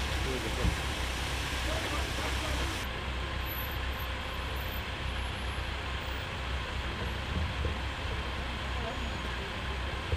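Motor vehicle engines running with a steady low rumble, with voices in the background.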